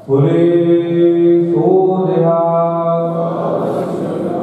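A man's voice chanting in long held notes that starts abruptly at full strength, changing pitch once about a second and a half in.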